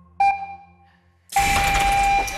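Electronic game-show ping, a bell-like tone that rings out once and fades over about a second. Shortly before the end a loud burst of music and noise cuts in suddenly.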